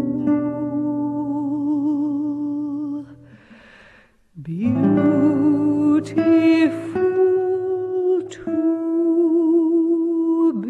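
Soprano voice singing long held notes with vibrato over plucked acoustic guitar. About three seconds in both drop away for about a second, then the voice comes back in and the guitar resumes.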